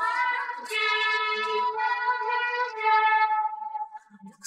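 Isolated female pop vocals, a cappella with the backing track removed, sliding up into one long held note that fades out just before the end.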